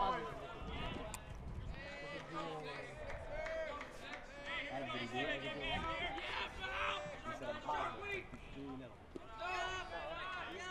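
Several distant voices talking and calling out over one another: chatter from players in the dugout and spectators around a baseball field.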